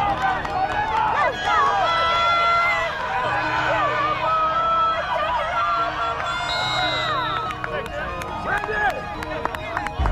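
A crowd of spectators shouting and cheering over one another, many voices at once.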